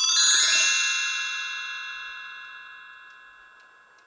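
A bright, bell-like chime struck once just as the music cuts off, ringing with several high tones and fading slowly away over about four seconds.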